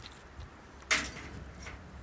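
A single short, sharp knock about a second in, against faint background noise.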